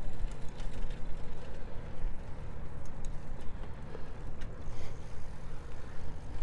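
Wind rumbling and gusting on a lavalier microphone's furry windscreen as the rider pedals a bicycle into a headwind, with road noise from the bike and a few faint clicks.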